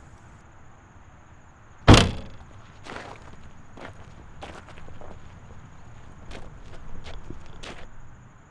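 A car's boot lid slams shut about two seconds in, followed by footsteps on a dirt track, about one step a second.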